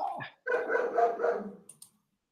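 A dog giving a drawn-out call about a second long, holding one steady pitch.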